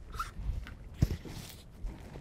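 Low rumble of wind on a chest-worn microphone, with light rustling and one sharp knock about a second in.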